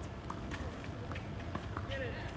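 Light footsteps and short thuds on a hard tennis court during a point, with faint voices behind.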